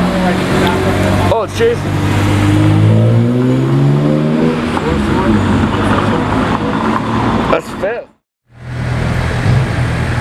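BMW E46 M3's straight-six engine accelerating away, its pitch climbing steadily for about three seconds, among street noise and passing voices. After a brief dropout near the end, another engine idles steadily.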